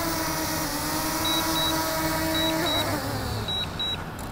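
DJI Mini 2 drone hovering close overhead, its propellers giving a steady whine, with pairs of short high beeps over it. Near the end the whine bends down in pitch and fades as the drone is landed in the hand.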